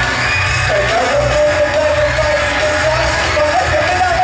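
Live pop-rock band with a male singer, who slides into a long held note about a second in; the crowd yells over the music.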